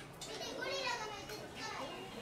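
Children's voices talking and calling out in the background, high-pitched and animated.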